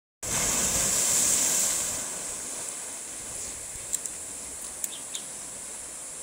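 Sea waves washing and breaking against coastal rocks, loudest over the first two seconds as a wave breaks, then a softer steady wash. A steady high hiss runs underneath, and a few short sharp clicks come near the end.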